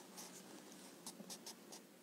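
Near silence: quiet room tone with a few faint, soft ticks and rustles.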